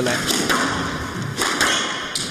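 Squash ball being struck by rackets and hitting the walls of a glass show court during a rally: a few sharp thuds about a second apart.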